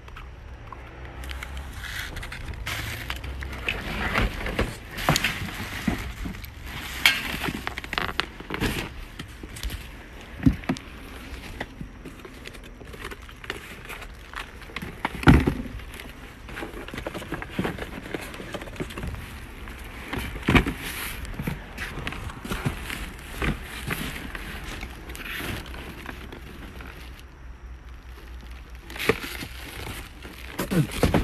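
Cardboard boxes and plastic-wrapped goods being handled and shifted while rummaging through a dumpster: irregular crinkling, rustling and clatter, with a few sharper knocks, the loudest about fifteen seconds in.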